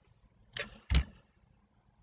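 Mouth noise from a close-miked man pausing between sentences: a short breath, then a lip click with a slight low thump about half a second later. Otherwise the pause is nearly silent.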